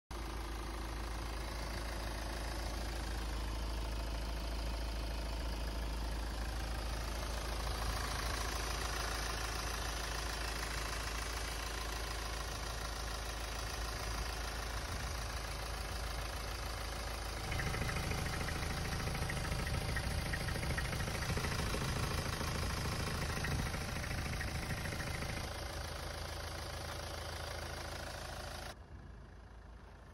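Hyundai Tucson's CRDi four-cylinder diesel engine idling steadily with the bonnet open. It runs louder for several seconds from about halfway through, then settles back, and the sound drops away sharply just before the end.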